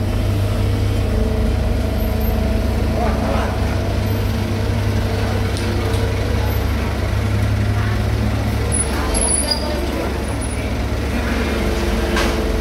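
Diesel engines of a Komatsu PC75 mini excavator and the dump trucks beside it running steadily, a loud low drone that shifts in pitch about nine seconds in.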